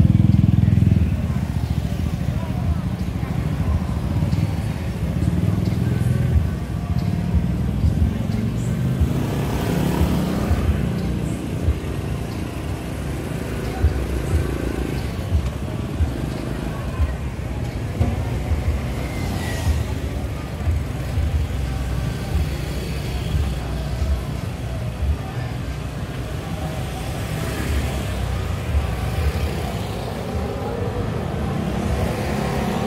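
Busy street ambience of motor scooters riding past. The engine rumble is loudest in the first second as a group passes close, then carries on steadily under background voices.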